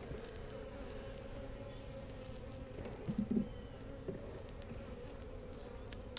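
Honey bees buzzing in a steady hum over an opened wooden hive, with a few faint clicks and a brief low knock about three seconds in as frames are handled.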